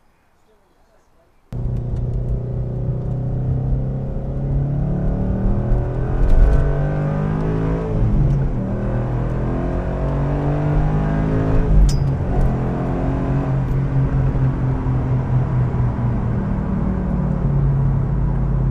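Car engine and road noise heard from inside a moving car, cutting in suddenly about a second and a half in. The engine note holds steady underneath while its higher tones rise and fall in pitch as the car speeds up and eases off.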